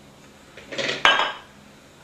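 Glass loaf dish set down on a stone countertop: a short clatter with one sharp clink about a second in.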